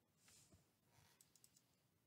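Faint computer mouse clicks, four or five in quick succession about a second in, after a soft hiss; otherwise near silence.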